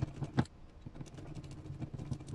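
Hand-turned hex driver working a small screw on a 1/10-scale RC crawler. It makes a run of fine, quick clicks and scrapes, with one sharper click about half a second in.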